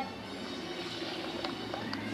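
Steady underwater background music and ambience playing from a television's speakers.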